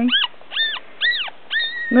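Young papillon puppy squealing: four short, high-pitched calls, each rising then falling, the last one held longer.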